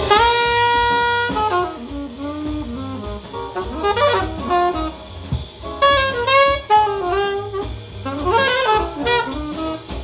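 Alto saxophone on a 10MFAN Showboat mouthpiece playing a jazz blues live: one long held note, then quick runs of notes, over a drum kit.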